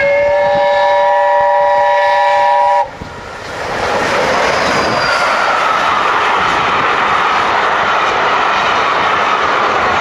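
BR A1 class 4-6-2 steam locomotive 60163 Tornado sounding one long chime whistle of several notes at once, which cuts off suddenly about three seconds in. Then the locomotive and its coaches pass close by, a loud, steady rush of wheels on the rails.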